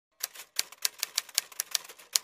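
Typewriter key strikes used as a typing sound effect: a quick series of about nine sharp clicks, roughly four or five a second.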